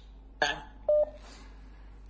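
A single short telephone beep about a second in, the line dropping just after a phone-in caller says goodbye. A brief voice sound comes just before it.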